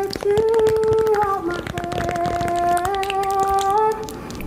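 A voice holding long, steady notes that step up and down in pitch, with light paper clicks and crackle from a folded paper dragon puppet being worked by hand.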